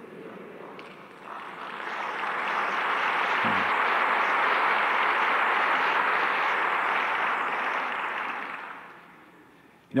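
Audience applauding: the clapping builds over the first couple of seconds, holds steady, and dies away near the end.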